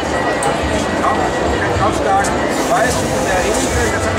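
A crowd of people talking at once: a steady babble of many overlapping voices with no single voice standing out.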